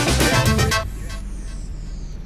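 Background music with a strong beat cuts off suddenly less than a second in, leaving a low steady street rumble of traffic and a faint high-pitched sweep falling in pitch.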